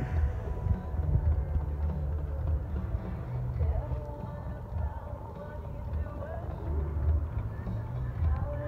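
Wind buffeting the microphone in an uneven low rumble, with faint distant voices in the middle.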